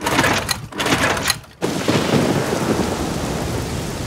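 Cartoon sound effects of a small outboard motor's pull-cord being yanked two or three times without the motor starting, because the motor is broken. About a second and a half in, this gives way to steady heavy rain with thunder.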